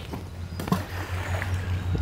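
Steady low outdoor rumble on a body-worn microphone, with one faint short knock about two-thirds of a second in, just after a stone has been slung toward a river.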